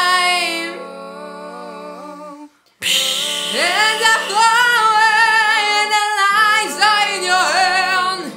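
Multitracked a cappella female voices, one singer layered into close vocal harmonies over a low held bass voice. About a second in the parts drop to a soft sustained chord and break off briefly just before three seconds. They then return loud, with several voices sliding up and down in pitch.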